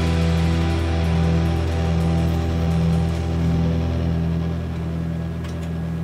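Intro music: one held electric guitar chord ringing steadily, then slowly fading out near the end.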